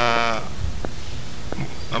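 A man's drawn-out hesitation vowel, a held "uhh" at one steady pitch that stops about half a second in, followed by a pause holding only low background noise and a few faint clicks.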